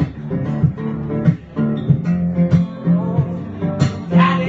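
Acoustic guitar strummed live, chords ringing between repeated strokes across the strings.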